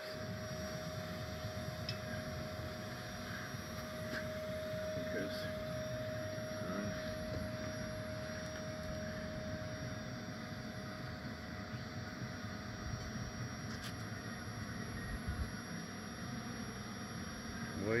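Honey bee colony buzzing as a steady low drone, disturbed as its comb is cut from the wall cavity. A steady higher hum fades out about halfway through.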